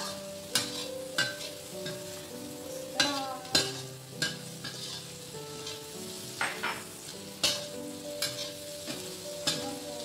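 Shrimp sizzling in soy sauce and lemon juice in a stainless steel wok as a metal spatula scrapes and clacks against the pan, tossing them, with sharp strokes every half second to a second. Soft piano music plays underneath.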